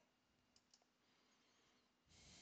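Near silence, with two very faint mouse clicks about half a second in.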